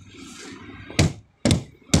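Three sharp knocks on a wooden shipping crate, about half a second apart, starting about a second in.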